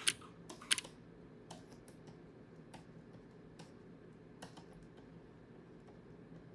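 Computer keyboard keys being pressed: two sharp key clicks within the first second, then a few scattered, lighter clicks.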